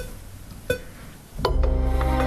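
Sampled French horn played from a keyboard and shaped with a breath controller: two short notes, then a full sustained chord comes in about one and a half seconds in.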